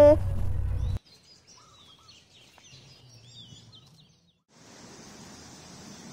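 Small birds chirping faintly in outdoor ambience, short chirps for a couple of seconds after a cut. The first second holds the end of a spoken line over a loud low rumble, and after a short break a steady faint outdoor hiss takes over.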